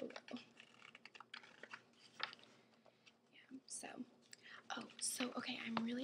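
Glossy magazine pages being handled and turned, giving a quick run of small crinkly paper clicks and rustles with one sharper snap a little after two seconds. From about halfway through, a soft whispering voice takes over and is the loudest sound.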